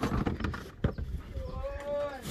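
Rustling and a sharp knock from parts and packaging being handled in a pickup truck bed, then a drawn-out high call over the last half second.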